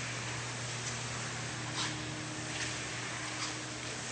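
Steady low hum of indoor room tone, with a few faint clicks about a second apart.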